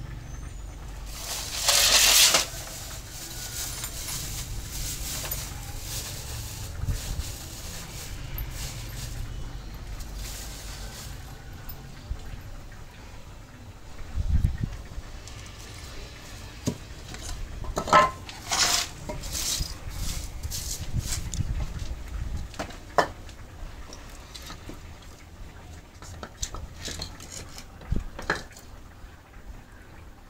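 Hand woodworking on a wooden stool: scattered knocks and taps of a hammer driving a chisel and of hardwood pieces being fitted together. A louder burst of noise about two seconds in.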